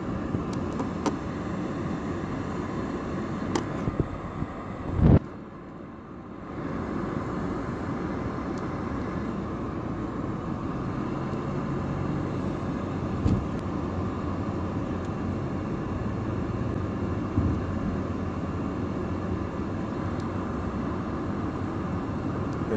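Steady road and engine noise heard from inside a moving car's cabin. There is a loud knock about five seconds in, followed by a dip in the noise for about a second.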